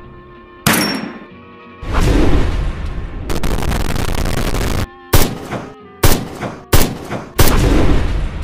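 Edited sound effects over music: a sharp bang near the start, then a loud steady burst of noise for about a second and a half, then four sharp bangs in quick succession near the end, like gunshots.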